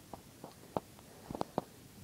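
A few faint, sharp clicks and light taps, scattered irregularly, with a quick cluster of three about a second and a half in.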